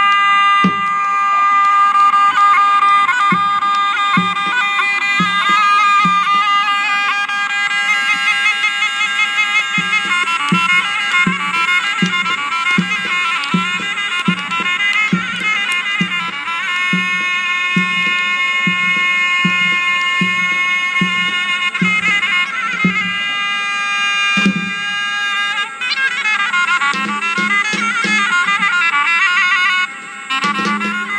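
Traditional folk wrestling music: a loud, reedy wind-instrument melody over a held drone tone, with a steady bass drum beat underneath.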